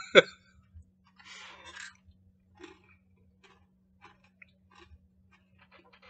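People chewing crunchy, seasoned, candy-coated peanuts (Takis Hot Nuts Fuego), with many small scattered crunches. There is a brief laugh right at the start and a faint steady hum underneath.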